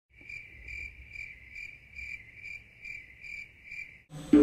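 A cricket chirping in an even rhythm, about two chirps a second, over a faint low rumble.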